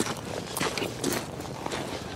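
Footsteps crunching on a shingle path, about two steps a second, as a person walks carrying a load of fishing gear.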